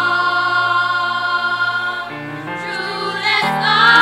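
Children's school choir singing long held notes, with a change of note about two seconds in and a louder phrase near the end.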